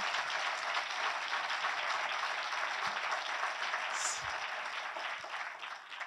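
Audience applauding, the clapping dying down toward the end.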